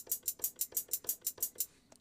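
Hi-hat from Logic's Trap Door drum kit, played from a MIDI keyboard as a steady run of short, crisp ticks about six a second (sixteenth notes at 94 BPM), stopping near the end.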